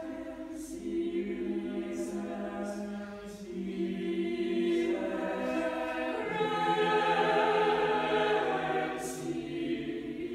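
A choir singing slow, sustained chords, growing fuller and louder in the second half.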